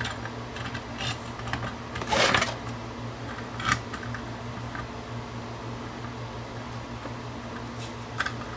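Small metal parts of a microscope mounting bracket clicking and scraping as they are handled and fitted onto the stand's base, a few scattered clicks with a longer scrape about two seconds in. A steady low hum runs underneath.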